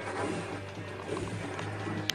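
Music from an old 1990s-era video game playing.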